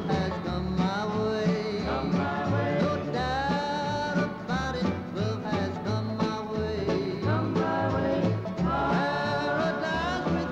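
Country song played by a small acoustic band: acoustic guitars picking over a steady upright-bass line, running without a break.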